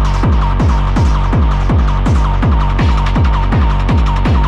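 Hardcore acid techno from a vinyl DJ mix: fast, distorted kick drums that drop in pitch, about three a second, under a steady high tone.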